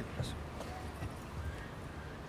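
Faint, indistinct talk with a few light knocks of footsteps on a stage, over a steady low hum.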